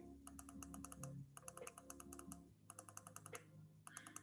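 Faint, quick runs of small clicks from a computer mouse, about ten a second, in three or four bursts with short pauses between them.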